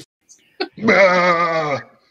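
A man's drawn-out, angry yell from a film clip, lasting about a second, its pitch wavering. A short click comes just before it.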